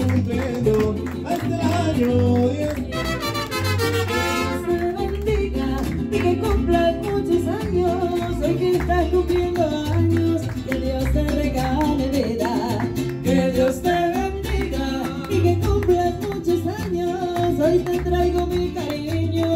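Live mariachi band playing, with strummed guitars over a steady bass beat and a melody line on top. A rising flourish comes about three seconds in.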